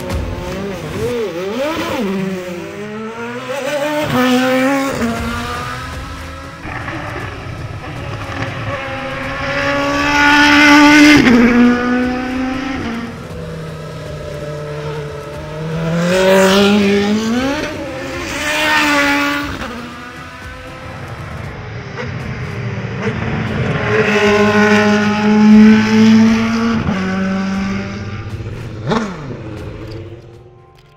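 Rodin FZED's Cosworth V8 racing engine at full throttle on track, its pitch climbing through each gear and dropping at each shift as the car passes several times, loudest about ten, seventeen and twenty-five seconds in.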